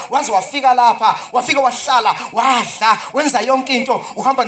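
A man's voice preaching in quick, rising-and-falling phrases.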